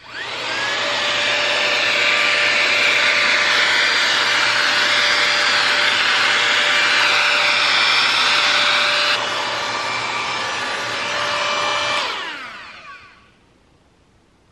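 Hot-air styler with a curling barrel, a Dyson Airwrap dupe, switched on and blowing: the fan motor spins up quickly, runs steadily with a whine, drops a little in level about nine seconds in, then is switched off and winds down near the end.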